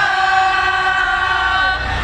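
Live band music with voices holding one long sung note over a low bass rumble. The note slides down near the end.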